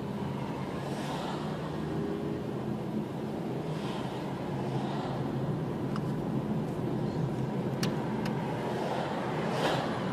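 Car driving in traffic heard from inside the cabin: a steady rumble of engine and tyres on the road, growing slightly louder as the car gathers speed. A few brief rushes of noise and a couple of light clicks, about six and eight seconds in, sit over it.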